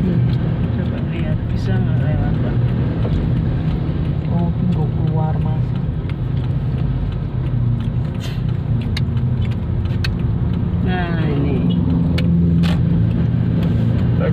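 Car driving along a road, its engine and tyres making a steady low hum, with a few sharp clicks in the second half.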